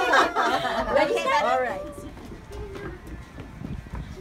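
Several voices talking and chattering over one another, lively and high-pitched, for about the first two seconds, then dropping to quieter background noise.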